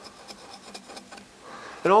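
Pfeil number 5 carving gouge cutting short strokes into dry wood with a rocking-handle motion to texture hair: a quick, irregular run of faint scratching strokes. A man's voice comes in at the very end.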